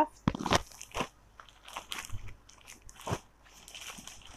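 Sico silk saree fabric rustling and crackling in irregular bursts as it is handled and unfolded close to a clip-on microphone.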